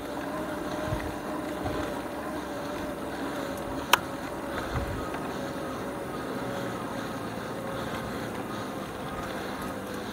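Lectric XP 3.0 e-bike's rear hub motor whining steadily under heavy load on a steep climb, its pitch sagging slightly as the bike slows, over wind and tyre noise. A single sharp click about four seconds in.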